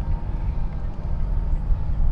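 A steady low rumble with a faint hum above it, and no speech.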